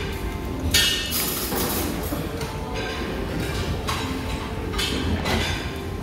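Restaurant dining-room background noise, with several short rushes of noise close on the handheld phone's microphone, about a second in and again near the end.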